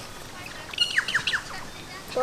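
A bird chirping: a quick run of four or five short, falling high notes about a second in.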